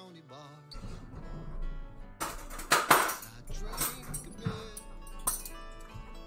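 Background music playing, with tableware clattering and clinking on a wooden serving board as it is handled and picked up: a burst of clatter about two to three seconds in, the loudest part, and a single knock near the end.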